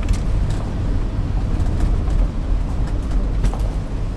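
Night-time city street ambience: a steady low rumble of traffic with a few sharp clicks scattered through it.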